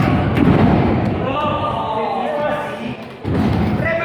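A thud about half a second in, typical of a wrestler's body or feet landing on the wrestling ring's canvas, with voices calling out around it.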